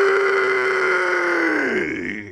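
A man's long drawn-out yell of the name "Daniel", the final "l" held on one steady pitch, then sagging in pitch and dying away near the end.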